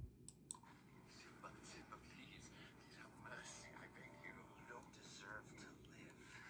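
Near silence with a faint voice in the background and two soft clicks within the first half second.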